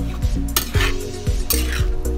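A metal spatula stirring and scraping through a coconut-milk stew in a metal wok, in two strokes about half a second and a second and a half in, over background music with a steady beat.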